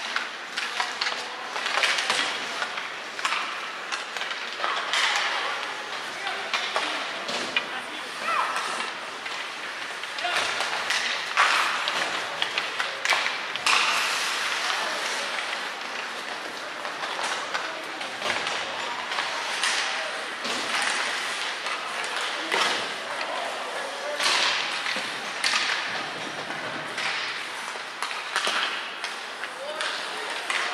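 Ice hockey game sounds in a rink: indistinct voices of players and spectators with many short sharp clacks and knocks of sticks, puck and skates on the ice.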